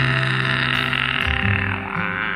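Karaoke backing music with steady bass and chords, and a man singing along, holding a long note with vibrato.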